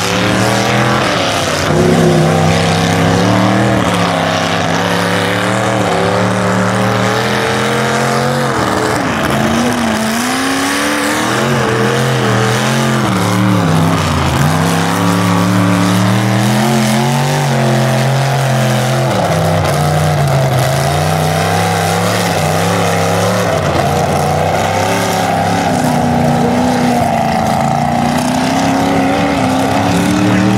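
A lifted pickup mud truck's engine is revving hard as it churns through a mud pit on big mud tires. The pitch rises and falls over and over, with a few deep drops, and settles into a steadier, higher note near the end.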